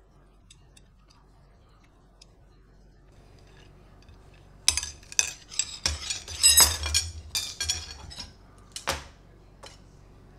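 Faint clicks from a small tube cutter working on an aluminium arrow shaft. About five seconds in comes a loud run of metallic clinks and rattles with a bright ringing, as the thin aluminium shafts knock together; one last sharp clink follows near the end.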